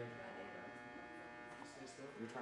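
Faint, steady electrical buzz, a mains-type hum with a stack of even overtones.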